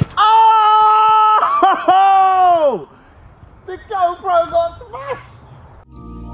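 A man's loud celebratory yell, held on one pitch for over a second, then wavering and falling away; a few shorter excited shouts follow about four seconds in.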